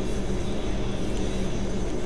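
Steady low machine hum, an even drone that does not change.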